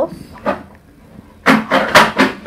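A metal ruler clattering and scraping against the tabletop and foam sheet, a quick run of sharp knocks starting about one and a half seconds in, after a short lull.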